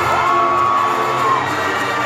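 Live Mexican regional music from a mariachi ensemble with drums and brass, under a cheering crowd. Near the start a long high note or shout slides up, holds for about a second, then drops away.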